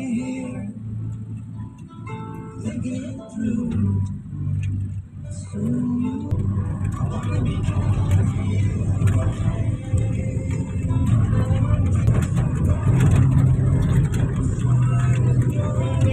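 Inside a moving van's cabin: a song playing on the stereo with a few voices, over engine and road noise that grows louder about six seconds in.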